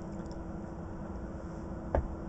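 Quiet, steady hum inside a stationary DAF XF truck cab, with one small click near the end.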